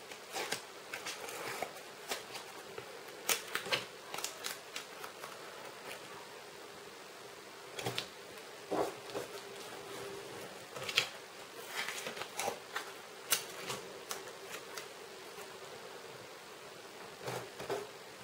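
Washi tape being handled on a paper planner page: peeled from the roll, torn and pressed down by hand, heard as scattered small crackles and taps at an uneven pace.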